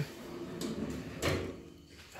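Steel drawer sliding out on ball-bearing telescopic drawer slides, a steady rolling rumble followed by a single knock about a second and a quarter in.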